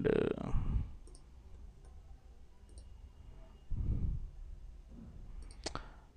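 Computer mouse clicking: a few faint, sharp clicks about a second apart, with a couple more near the end.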